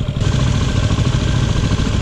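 Single-cylinder dirt bike engine idling steadily at close range.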